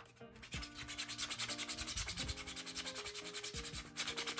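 Coarse 80-grit sandpaper rubbed by hand over a 3D-printed plastic helmet piece in quick, even back-and-forth strokes, grinding down thick print layer lines.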